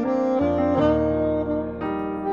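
Instrumental cover music: a Yamaha YAS-280 alto saxophone playing a melody over a backing track with a steady bass and plucked-string accompaniment, the notes changing every half second or so.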